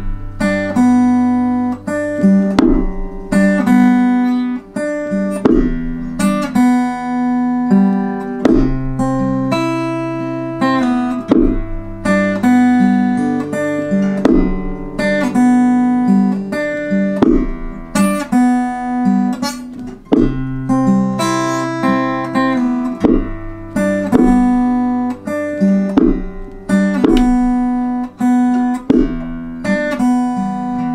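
Acoustic guitar strummed in steady chords, with a homemade wooden stomp box thumping a low beat under the player's foot.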